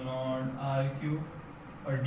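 A man's voice speaking slowly in long, drawn-out syllables, fading to a quieter pause about two-thirds of the way through.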